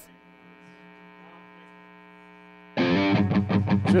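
A faint, steady electrical hum from the band's idling guitar rig. At about 2.8 s loud electric guitar strumming and voices cut in suddenly.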